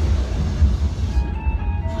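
Ride pre-show soundtrack over loudspeakers in a darkened room: a loud deep rumble, with short eerie high notes of music coming in about a second in.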